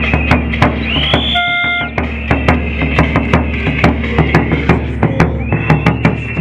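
Marching bass drum beaten in a steady rhythm, several strokes a second, with high held tones sounding over it at times.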